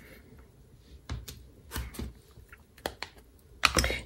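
A few light clicks and taps of plastic crafting tools handled on a desk, ending in a louder cluster of clicks as the plastic lid of a Memento ink pad is snapped shut.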